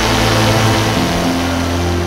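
Parajet Maverick paramotor's two-stroke engine running steadily in flight, a loud continuous drone, with background music coming in over it.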